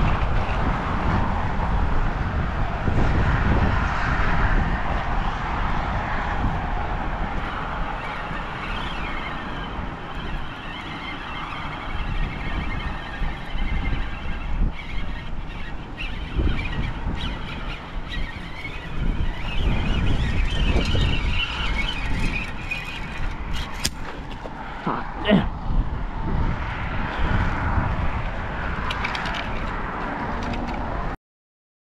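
Wind buffeting the microphone over a conventional fishing reel being worked against a hooked fish, with a few sharp clicks and a short squeal near the end.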